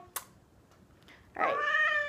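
A tabby cat meowing: a brief click just after the start, then quiet, then one long meow held at a steady pitch begins near the end.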